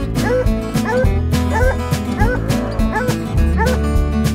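Walker coonhound barking at a tree, quick chopped barks about three a second, the bark of a hound that has treed a raccoon. Music with a heavy bass beat plays under the barking.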